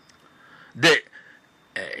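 A single brief vocal sound from the man's voice, about a second in and a quarter of a second long, falling in pitch, like a short grunt or swallowed syllable; his speech starts again near the end.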